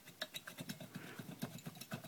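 Faint, rapid, irregular clicks and scrapes of a Yamaha PW50's two-stroke cylinder barrel being worked up and off its studs by a gloved hand.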